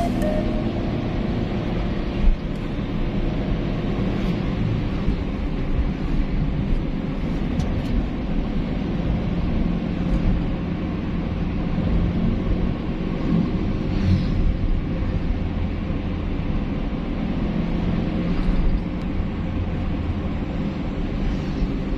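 Steady road and engine rumble heard inside a moving car's cabin, with music playing over it and a brief knock about two seconds in.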